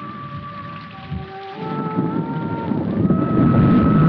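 Film soundtrack: rumbling thunder with rain, swelling to its loudest near the end, under a slow background-score melody of long held notes.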